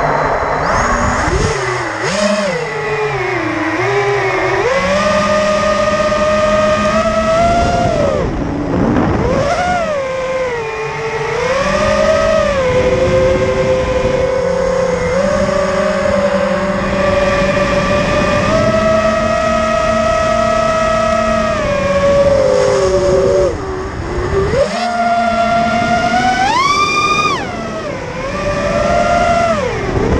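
Racing quadcopter's four BrotherHobby Returner R5 2306 2650 kV brushless motors spinning 6-inch propellers on a 5S battery, heard from the onboard camera: a pitched whine that rises and falls with the throttle, with a sharp climb near the end. On this first low-Q Kalman filter setting it shows vibrations right from take-off.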